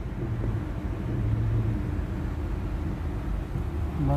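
Steady low hum of a car heard from inside its cabin: engine and road noise.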